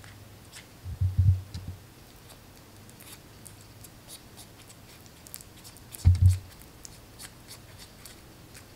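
Hands handling a small paper packet of powder, with faint papery ticks and crinkles, and two dull low thumps, one about a second in and one about six seconds in.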